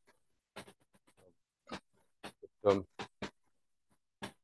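Footsteps of a man walking across a hard floor: a string of short, faint knocks about two a second, with a brief murmured "um" near the end.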